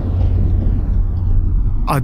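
Tail of a deep dramatic boom sound effect: its hiss fades away while a low rumble holds on underneath. A man's voice starts near the end.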